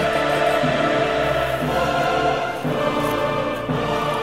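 Background music: a choir singing held chords.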